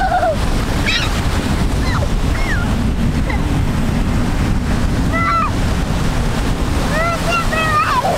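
Ocean surf breaking in the shallows and wind buffeting the microphone, a steady rumbling wash. A few short high-pitched voices call out now and then, most around five seconds in and near the end.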